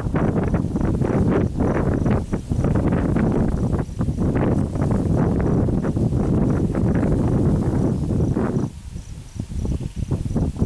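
Wind buffeting the microphone outdoors, a loud low rumble that comes in gusts and drops away briefly near the end. A faint, evenly pulsed high chirp runs underneath.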